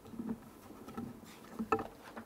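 Faint scattered clicks and knocks from a laptop being handled at a lectern, keys or buttons being pressed, with the sharpest click near the end, over quiet room tone.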